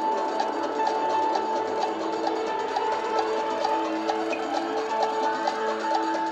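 Game-show countdown clock music: a repeated high note over a steady ticking pulse of about two ticks a second, with lower held notes beneath. It marks the closing seconds of the 30-second round.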